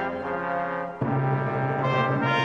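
Instrumental break music of held chords: one chord fades over the first second, then a new, fuller chord comes in suddenly about a second in and holds.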